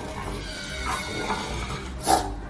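A French bulldog making short vocal sounds over music.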